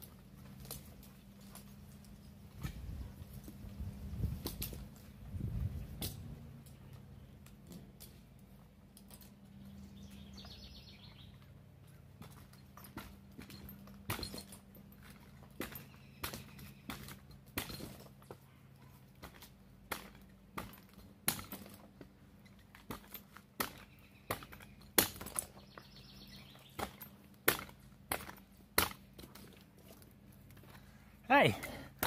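A tree climber's gear clicking and knocking as he climbs the trunk: sharp metallic clicks and knocks that come more often and grow louder toward the end as he nears, over a faint low hum.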